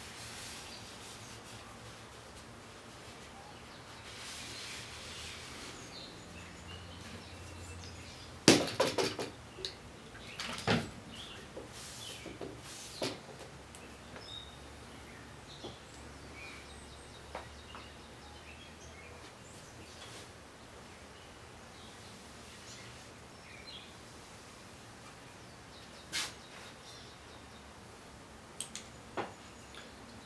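Quiet workshop with the occasional knock and click of a steel drawknife and hand lens being handled. The loudest knock comes about eight and a half seconds in, with a brief rustle a few seconds before it.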